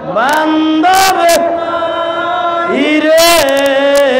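A man chanting an Islamic devotional chant solo into a microphone. He holds long notes, sliding up into each new phrase, about three phrases in all.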